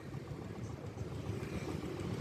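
Steady, low rumble of street traffic: engines of motorbikes and a homemade three-wheeled cargo vehicle, heard from a moving vehicle.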